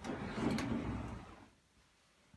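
Sliding and rustling as a clothes closet is opened and the hanging clothes are pushed aside. It lasts about a second and a half, with a click about half a second in, then fades out.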